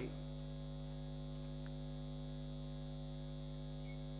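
Steady electrical mains hum: a low, even buzz with a ladder of steady overtones above it, unchanging throughout.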